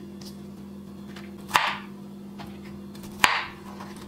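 Two chops of a kitchen knife through cauliflower onto a wooden cutting board, each a sharp knock followed by a short crunch. The second comes about a second and a half after the first, over a faint steady hum.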